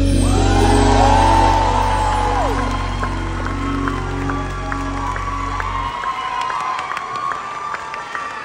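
A live band's final held chord ending the song, with the audience cheering and whooping over it. The chord stops about six seconds in, leaving the crowd cheering and clapping.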